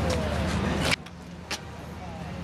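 Outdoor background noise with faint voices and a steady low hum, dropping suddenly about a second in to a quieter background, followed by a single sharp click.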